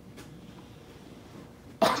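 Faint room tone in a pause, then near the end a man's sudden breathy exclamation, "Oh".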